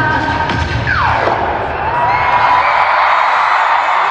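The last bar of a K-pop dance track through stadium speakers, ending about a second in with a sharp falling pitch sweep. A large concert crowd cheers and screams after it.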